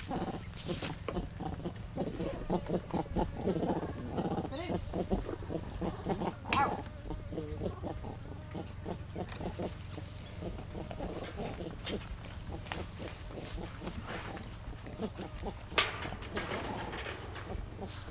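Vervet monkeys calling in a troop: a run of pitched calls and chatter in the first few seconds, a sharper call about six and a half seconds in and another sudden sound near the end, over a steady low hum.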